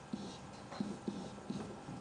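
Faint, scattered taps and light scratches of a stylus on a pen tablet, as a drawing is started on screen.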